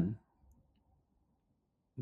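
A spoken line ends, then near silence between lines of dialogue until the next word begins right at the end.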